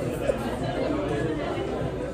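Restaurant dining-room chatter: a steady murmur of diners' voices, with a brief laugh at the start.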